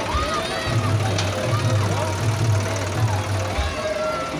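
Loud DJ music played through a sound system: a heavy, pulsing bass line with singing or voices over it.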